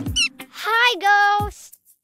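A cartoon character's wordless vocal sounds: a short high squeak, then a questioning 'hmm' that rises, holds and drops in pitch.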